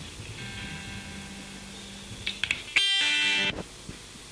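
Opening of a rock song: a ringing guitar chord dies away, a few single notes are picked, then another guitar chord rings out about three seconds in.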